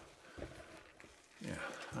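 Quiet room tone in a pause between words, with one faint short sound about a third of a second in and a murmured word near the end.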